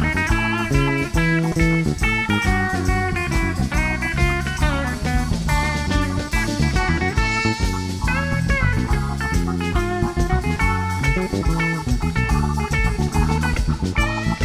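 Live rock band playing an instrumental passage: electric lead guitar with bent notes over bass, drums and keyboard.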